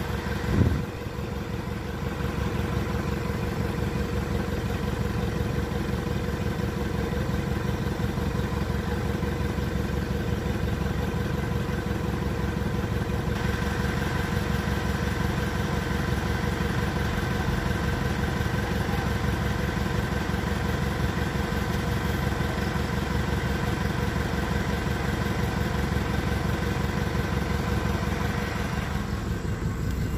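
Motorcycle engine idling steadily, with a brief louder knock about a second in.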